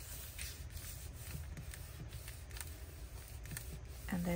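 Faint paper rustling and rubbing in short, scattered rustles as hands press and smooth a vellum pocket onto patterned cardstock.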